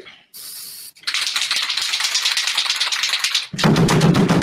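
An aerosol spray-paint can gives a short high hiss, then is shaken hard for about two and a half seconds, its mixing ball rattling rapidly. A man's voice comes in near the end.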